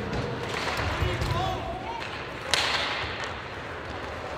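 Ice hockey play on the rink: skates and sticks on the ice, voices calling out, and a sharp crack about two and a half seconds in.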